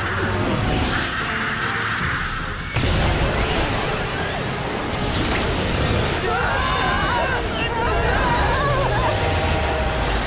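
Cartoon battle sound effects over background music: a rushing whoosh, then a sudden loud blast about three seconds in that runs on as a dense rumble. Wavering cries or effect tones come near the end.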